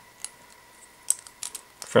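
A few faint, light clicks of plastic LEGO brackets and bricks being handled and pressed together in the hands, one about a quarter second in and several more past the one-second mark.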